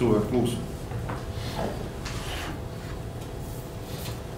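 A voice finishes a phrase, then meeting-room quiet: a steady low hum with a few faint handling noises at the table.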